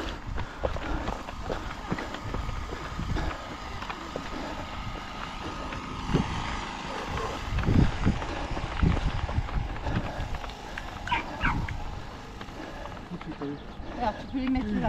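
Wind rumbling on the microphone and footfalls of a runner on a dirt mountain trail, with brief distant voices about three-quarters of the way through.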